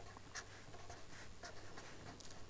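Pen scratching on paper as a formula is written: faint, short strokes.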